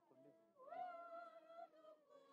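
A high-pitched vocal sound that slides up about half a second in, holds one note for about a second, then trails off.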